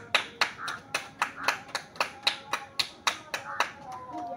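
Hand claps in a steady rhythm, about four a second, stopping shortly before the end, with faint children's voices under them.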